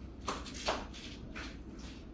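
Cloth rustling and shuffling as a baby is handled and dressed: a few short brushing sounds, the loudest two within the first second.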